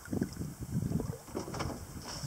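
Irregular low rumbling of wind buffeting the microphone, with water lapping close by.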